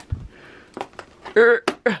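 Soft knocks and clicks of hands working a cardboard advent calendar door, with a brief throat-clearing-like vocal sound about halfway through.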